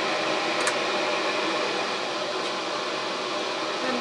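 Vent hood exhaust fan running steadily, a continuous airflow noise, with one small click just over half a second in.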